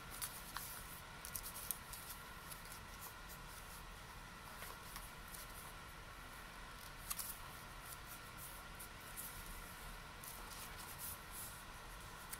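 Faint rustling and crinkling of paper as a postcard and cardstock are folded and smoothed by hand, with scattered sharp little ticks, over a steady faint hum.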